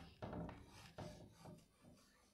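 Chalk scratching on a chalkboard as words are written: a few short, faint strokes that die away near the end.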